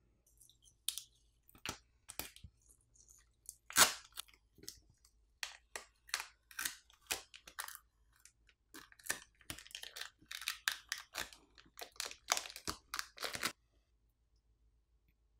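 Thin adhesive-backed plastic film being peeled off a smartphone's internal frame: irregular crinkling and crackling as the sheet comes unstuck and flexes, with one sharper crackle about four seconds in and a dense run of crackles over the last few seconds.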